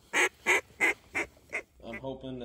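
A series of five loud duck quacks about a third of a second apart, the last two fainter, in the falling pattern of a mallard hen's call.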